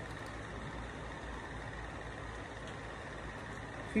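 Steady background hum and hiss with a faint, thin high whine, unchanging throughout, with no distinct event.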